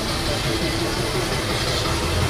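Steady roadside noise: a vehicle engine running, with people's voices mixed in.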